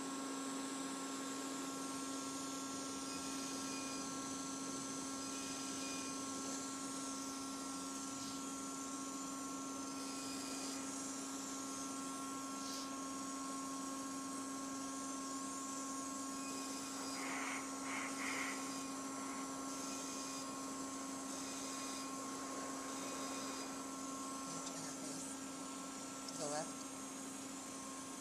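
Edge 1 CO2 laser system running with a steady electrical hum and faint short beeps every few seconds as the handpiece fires on the skin.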